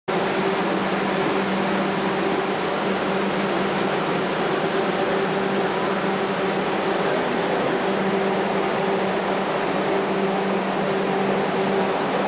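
A steady mechanical whir and hiss, like a fan running, with a low hum that drops out briefly a few times.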